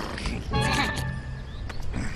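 Cartoon soundtrack music with a wordless vocal grunt from the cartoon polar bear about half a second in, followed by a few light clicks near the end.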